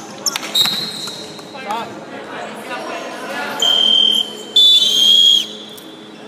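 Referee's whistle blown twice, two shrill steady blasts about half a second apart starting some three and a half seconds in, the second longer and ending with a slight drop in pitch: play being stopped. Before them, basketball bounces, short shoe squeaks and players' shouts ring around the large gym.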